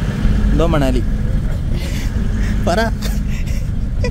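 Steady low rumble of a bus engine heard inside the passenger cabin, with brief voices over it.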